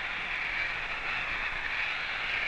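Steady rushing hiss of high-pressure air blowing through a nozzle test rig, even throughout with no breaks.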